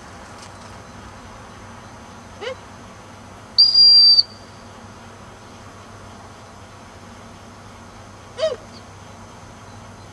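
A dog-training whistle blown once in a single steady, high, loud blast about half a second long, a little past three and a half seconds in: the stop signal to a dog sent far out. Two short pitched calls are heard faintly before and after it.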